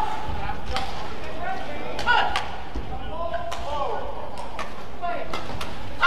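Badminton rally: a series of sharp, crisp racket strikes on the shuttlecock and footfalls on the court, with short squeaking glides from shoes, ringing in a large hall.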